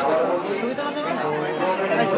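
Chatter of a dense crowd: many voices talking over one another, some of them close by.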